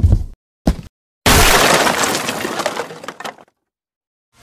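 A short sharp hit, then about a second in a loud shattering crash that dies away over about two seconds.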